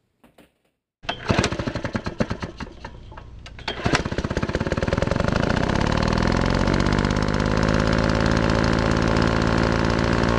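A small engine firing in rapid, uneven pulses about a second in, then running steadily and loud from about four seconds in.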